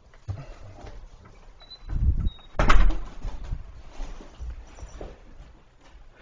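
Handling noises from a heavy bag of cat litter being carried off, with a dull thump about two seconds in and a sharp knock just after it, the loudest sound.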